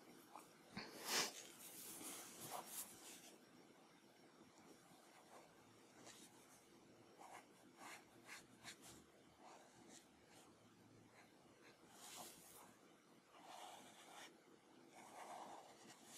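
Faint strokes of a Copic alcohol marker shading on paper, a few louder strokes in the first three seconds, then quieter scattered strokes.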